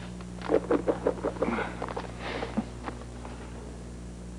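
A small dog whimpering in a string of short, high yelps for about two seconds, over a steady low hum.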